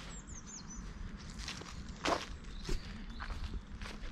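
Footsteps of a person walking, a few soft steps, with a bird chirping briefly near the start.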